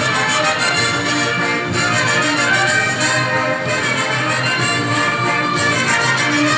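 Instrumental dance music from a band with brass and fiddle, playing loud and steady between sung verses.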